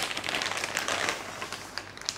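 Clear plastic bag crinkling in a continuous run of small crackles as a router is slid out of it by hand.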